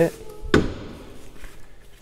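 Electric entry step of a motorhome sliding out beneath the door, with one sharp thunk about half a second in, then a faint whir dying away.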